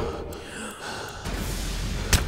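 A person's breathy gasp, with a low hum coming in about halfway through.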